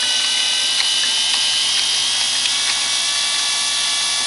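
Two DC power window motors with worm gearboxes running fast under PWM drive from an H-bridge motor controller: a steady whir with several high, whining tones.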